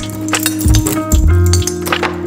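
Background music, over keys clinking and jingling as a key is worked in a door lock, with a series of sharp metallic clicks.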